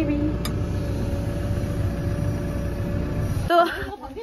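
Diesel engine of a road-building dozer running steadily, heard from inside its cab: a low drone with a steady hum. It stops suddenly about three and a half seconds in.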